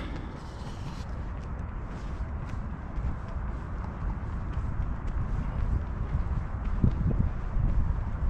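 Wind buffeting the camera's microphone: a low, uneven rumble.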